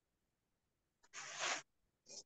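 A single short burst of noise about a second in, lasting about half a second and stopping abruptly, with near silence before it.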